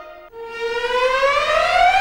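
A siren-like sound effect in the show's comic score: one tone that rises steadily in pitch for about a second and a half, then holds.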